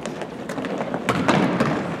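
Basketball bouncing on a hardwood gym floor: a few separate thuds over the steady background noise of the hall.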